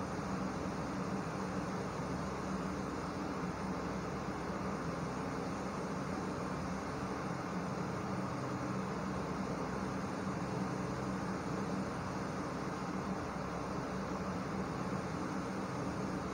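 Gulab jamun dumplings deep-frying in oil in a kadai, a steady gentle sizzle with a faint low hum underneath.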